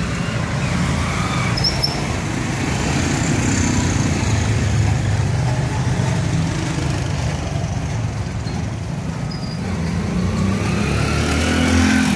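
Steady street traffic noise: a continuous low engine rumble from motor vehicles, growing a little louder near the end as a vehicle comes close.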